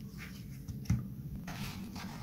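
Faint handling sounds of fingers on a small circuit board carrying a battery pack, with a light tap a little under a second in.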